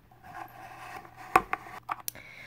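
Small Littlest Pet Shop plastic figurines being handled and moved on a hard shelf, with a couple of light taps about one and a half seconds in as a figure knocks against the surface.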